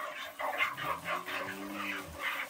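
Hand milking of a cow: milk jets squirting from the teats into a plastic bucket, about four or five strokes a second. From about a third of the way in, a low steady humming tone runs underneath.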